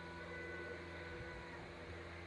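Faint sound from a television speaker: a few soft held tones that fade out about a second and a half in, over a steady low room hum.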